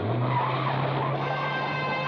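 Cartoon race-car sound effect: an engine drone and tyre screech start suddenly as the car pulls away. Music comes in about a second in.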